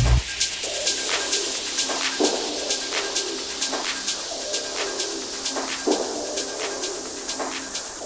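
Techno track in a breakdown: the kick drum cuts out right at the start, leaving offbeat hi-hats ticking about twice a second over short, recurring mid-pitched sounds that slide in pitch.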